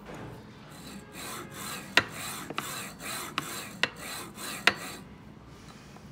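Wanhao D8 3D printer's Z-axis carriage pushed back and forth by hand along its linear rails, a run of short rasping strokes about two a second with a few sharp clicks among them, stopping about a second before the end. This is the stroke-by-stroke check that the rails slide smoothly after part of the rail bolts have been re-tightened.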